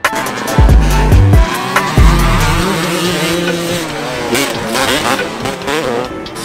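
Several motocross dirt bike engines revving and falling through the gears, their pitches wavering up and down over one another. In the first two seconds deep sliding bass notes from music lie under them.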